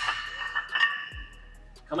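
A metal ring from small weight plates knocked together as they are turned in the hands, fading away over about a second and a half. Background music with a steady beat runs underneath.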